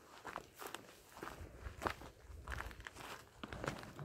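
Footsteps on a dry dirt trail strewn with leaves and pebbles, about two steps a second at an uneven pace.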